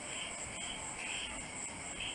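Insects chirping, crickets by the sound of it: a steady high trill with short, lower chirps now and then.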